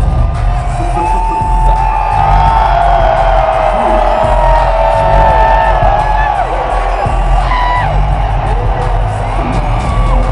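Fighter's walkout music played loud over an arena PA with a heavy bass beat, while a large crowd cheers, with whoops and shouts sliding up and down in pitch over it.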